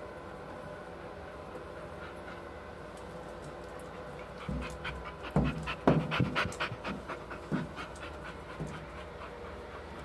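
A dog panting close to the microphone, starting about halfway through in a quick run of loud breaths, about three or four a second, over a steady background hum.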